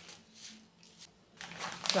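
Faint rustling and crinkling of paper seed packets being handled, with a louder rustle near the end.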